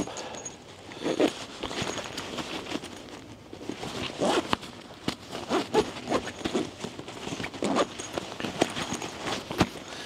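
Zipper on a camping chair's stuff sack being pulled closed in several short, irregular pulls, with fabric of the packed sack rustling between them.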